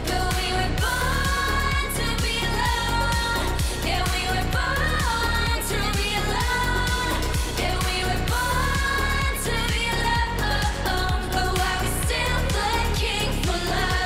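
K-pop dance-pop song: female vocals singing the English lines "But we were born to be alone" and "But why we still looking for love" over a steady kick-drum beat of about two beats a second.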